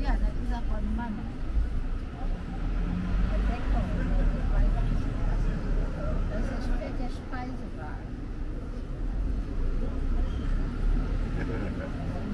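Indistinct talk of people nearby, no clear words, over a steady low rumble.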